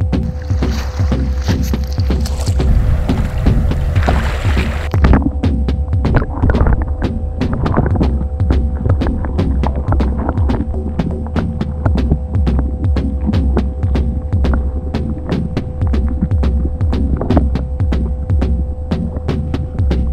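Background music with a steady, throbbing pulse and held tones. A rushing noise runs over the first five seconds and cuts off suddenly.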